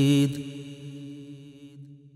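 A man's voice ends a long sung note with vibrato in a devotional manqabat, cutting off about a quarter of a second in. A steady low drone carries on underneath and fades gradually.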